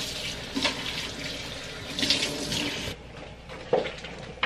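Kitchen faucet running into a stainless steel sink as hands rinse under the stream, with a few splashes. The water sound cuts off suddenly about three seconds in, and a single short knock follows near the end.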